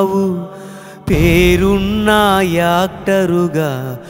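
A solo voice singing a Telugu tribute song with musical accompaniment: a held note fades away in the first second, then a new sung phrase starts about a second in and carries on.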